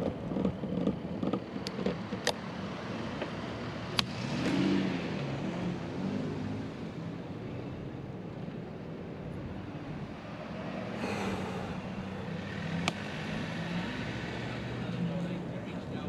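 Street traffic and road noise heard from a moving camera, with a steady rumble that swells a couple of times as vehicles pass. A few sharp clicks come through, about two seconds in, at four seconds, and late on.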